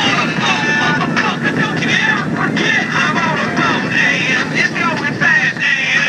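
Motorboat engines running steadily at speed, with water rushing against the hull and wind over the microphone.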